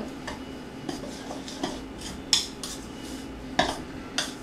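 A utensil stirring dry flour mix in a mixing bowl, scraping and clinking irregularly against the bowl, with two louder clinks in the second half.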